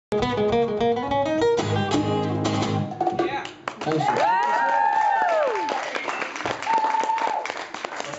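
Acoustic guitars playing the last strummed chords of a song, which ring out and stop about three seconds in. Then the audience cheers with high whoops.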